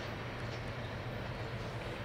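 Freight train tank cars rolling past, a steady noise of steel wheels on the rails.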